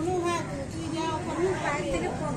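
High-pitched voices talking and calling out, with the chatter of a crowd behind them.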